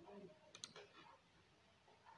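Faint computer mouse clicks, a couple of them close together a little over half a second in: the click that picks "Group" from a right-click menu.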